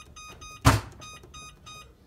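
Electric range's touch control panel beeping with each button press as the time is stepped up to 12 minutes: a rapid run of short electronic beeps. A single loud sharp knock comes about two-thirds of a second in.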